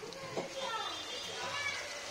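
Children's voices chattering in the background, with a short knock about half a second in.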